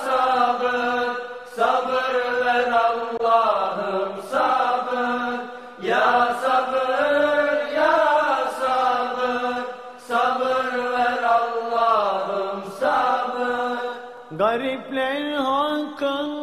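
Unaccompanied ilahi, a Turkish Islamic hymn: voices singing long, drawn-out melodic phrases of a few seconds each, with brief breaks between them.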